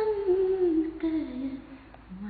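A woman's solo voice singing a slow melody that falls step by step in pitch across the two seconds.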